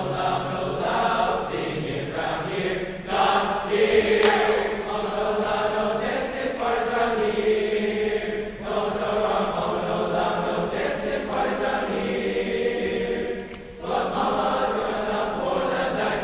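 Large school choir of young voices singing together in phrases, with a short break in the singing near the end.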